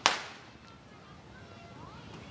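A single sharp firecracker bang right at the start, dying away within a moment, followed by faint street noise and voices.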